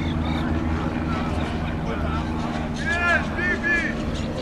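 A steady low mechanical hum, like an engine running, under faint distant voices, with a few short high-pitched shouts about three seconds in.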